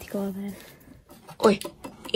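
Mostly speech: a short spoken phrase, then an exclamation "oi" about one and a half seconds in. Between them, a few faint clicks from the hands handling the racing wheel base.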